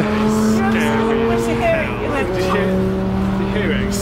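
A car engine running close by at a steady pitch. Its note drops away about two seconds in and returns shortly after.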